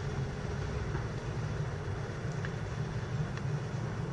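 Steady low hum of a building's air-conditioning, with a couple of faint ticks.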